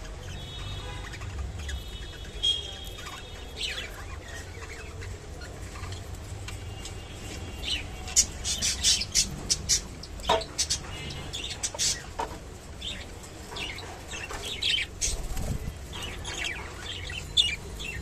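Budgerigars chirping and warbling in short high calls, with a run of quick sharp clicks in the middle and again later as they peck and tear at water spinach stems.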